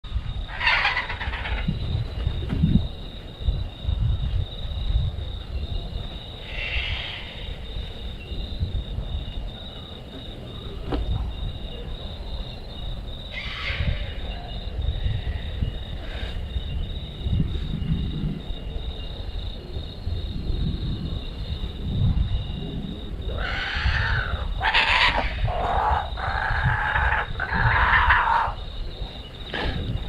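Kookaburras calling: a few short calls spaced through the first half, then a longer, louder run of calls near the end, over a constant low rumble of wind on the microphone.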